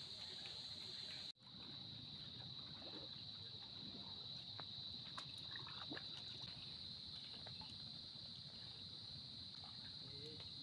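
Faint water lapping and a few small paddle splashes from a small outrigger canoe, over a steady high-pitched insect drone.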